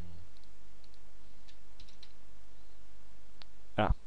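A few faint, short clicks from a computer mouse and keyboard, scattered through the first half, over a steady low hum.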